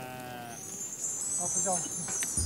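A sheep's long bleat trails off in the first half-second. About half a second in, a high, shimmering jingle of bells sets in and carries on.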